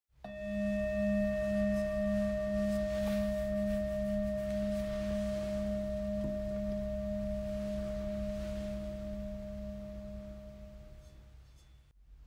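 A singing bowl struck once, ringing with several overtones and a slowly pulsing low hum, then fading away over about eleven seconds.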